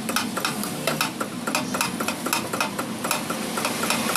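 Shop press working the rubber tube bush in a 2010 Toyota Corolla GLi's rear axle arm: a run of rapid, irregular clicks and crackles over a steady low hum.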